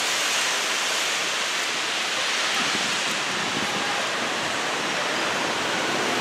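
Steady, even rushing noise with no clear events in it, strongest in the upper range: outdoor background noise.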